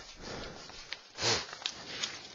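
A book being picked up and handled close to the microphone: a few light knocks and one short rustling burst about a second in.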